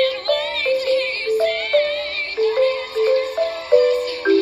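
Marimba playing a melody of pitched mallet notes alongside a high singing voice with a wide vibrato.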